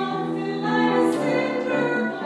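Three men's voices singing together in harmony over a grand piano, holding long notes and moving to new ones about halfway through.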